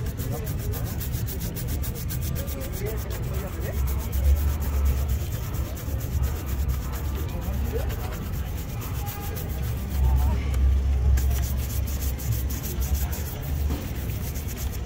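A stiff-bristled shoe brush is scrubbed back and forth in quick strokes over a black leather shoe, making a steady rubbing. A low rumble swells up about four seconds in and again about ten seconds in.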